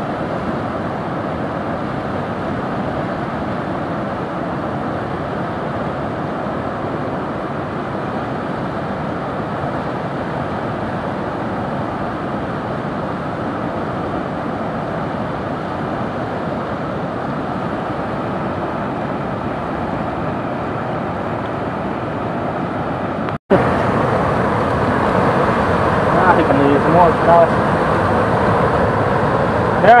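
Fast river water rushing over a low weir and rapids, a steady even rush. About 23 seconds in it cuts to a louder, brighter rush of the same water, heard closer.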